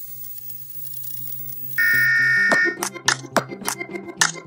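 Intro sound effects: a television static hiss, then a loud, steady electronic beep lasting about a second, cut off as intro music with sharp percussive beats, about three a second, comes in.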